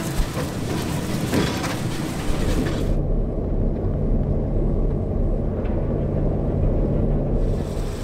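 Heavy farm machinery running, a steady low engine rumble with a droning hum. The higher hiss drops away abruptly about three seconds in and comes back near the end.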